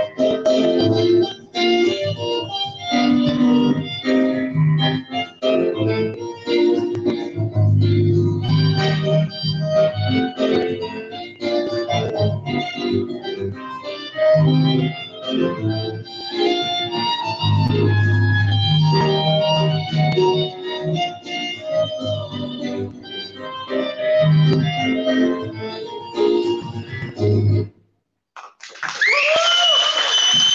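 Instrumental music accompanying a ballet routine, sustained chords over a low bass line. The music cuts off suddenly about two seconds before the end, and a high voice calls out just after.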